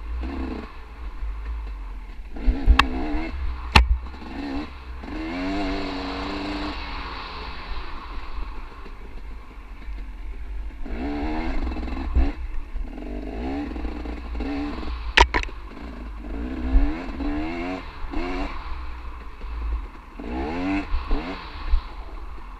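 Dirt bike ridden along a forest singletrack, its engine revving up and falling back again and again as the rider works the throttle, over a steady low rumble. Three sharp knocks, two near the start and one past the middle, as the bike hits bumps on the trail.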